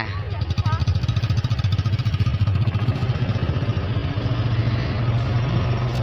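Small motorcycle engine running steadily under way, with a fast, even pulsing.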